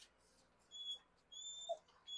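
Dog whining faintly in two thin, high-pitched whines, a short one about a second in and a longer one just after.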